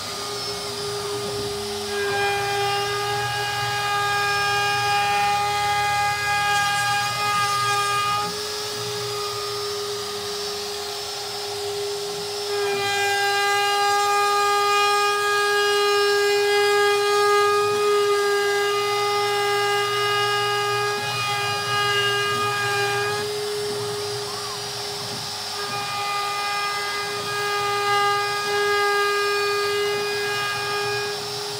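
DeWalt router running at high speed on a desktop CNC machine, cutting a shallow design into a hardwood cutting board: a steady, high-pitched whine throughout, growing louder and higher in three long stretches.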